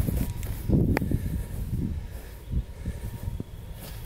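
A boot pressing a long steel nail down into grass turf as a ground stake: dull low thuds and one sharp click about a second in, over a low rumble.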